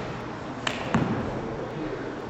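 Two sharp slaps about a quarter second apart, a little under a second in, the second louder with a low thud: hands and arms striking as an open hand deflects a knife stab.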